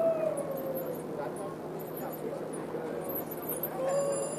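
Emergency vehicle siren wailing: one long rise and slow fall in pitch over about a second and a half, and a shorter swell near the end.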